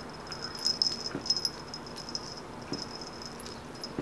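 Fingers scratching a cat's fur, a crackly rustling in short bursts, busiest in the first half.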